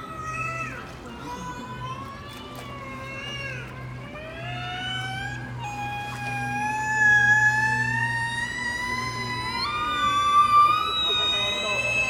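Orca (killer whale) calling in air with its head out of the water, on a trainer's hand signal: a few short falling calls, then one long unbroken call that climbs slowly in pitch, jumping higher twice, about halfway through and near the end.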